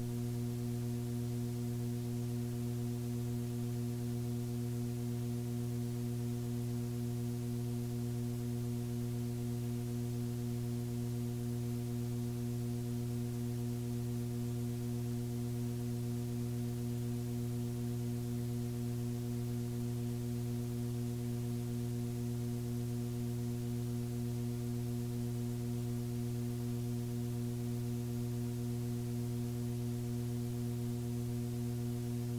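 Steady low electrical hum with a stack of even overtones, unchanging throughout: mains hum left on the blank stretch after a cassette side ends.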